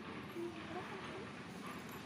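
Faint outdoor background noise with a brief, distant voice about half a second to a second in.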